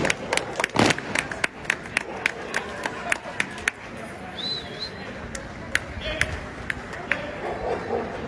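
Spectators clapping along the parade route, about three sharp claps a second, thinning out after about four seconds, over a murmur of crowd voices. A short wavering high tone sounds about halfway through.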